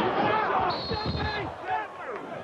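Basketball court game sound from an arena broadcast: sneakers squeaking on the hardwood and thuds of players and ball, over crowd noise. One held high squeal lasts under a second near the middle.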